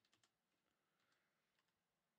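Near silence, with a few faint clicks in the first moment.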